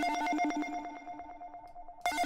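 Synthesized FX note from the Serum soft synth: a buzzy, bell-like ringing tone with several fixed pitches and a rapid flutter, fading out slowly on a long amp-envelope decay tail. The note is retriggered at the very end.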